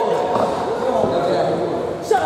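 Voices of people talking and calling out, echoing in a large gym hall.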